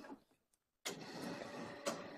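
Faint room noise that cuts out to dead silence for about half a second, then comes back suddenly with a sharp click; a second click comes near the end.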